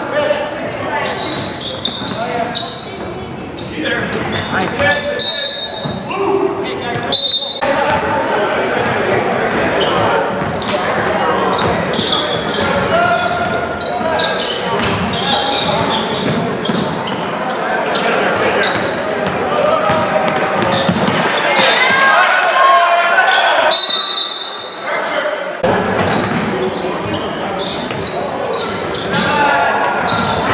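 Basketball game in a gymnasium: a ball bouncing on the hardwood court amid the indistinct voices of players and spectators, echoing in the large hall.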